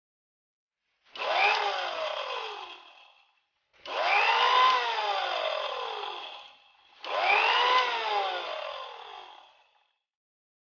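Indian mixer grinder (mixie) with a small steel jar, run in three short pulses to grind ingredients to a powder. Each burst starts abruptly and its whine falls in pitch as the motor winds down.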